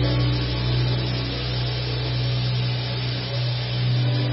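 Sustained low keyboard chord held steadily, with a faint murmur from the congregation praying underneath.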